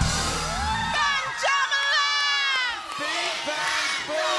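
A crowd of young children cheering and shouting excitedly, many high voices rising and falling together, with music underneath.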